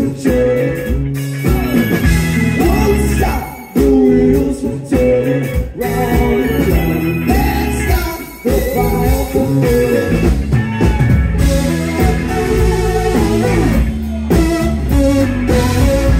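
Live rock band playing: electric guitars, bass and drums, with singing voices.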